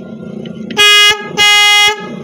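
A first-copy Elephant vehicle horn sounding two short, loud blasts, the second a little longer, each one steady high note.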